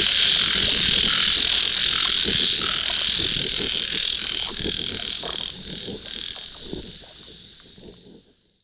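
Night chorus of frogs croaking by a ditch, with a high pulsing buzz above it, fading out over the last few seconds.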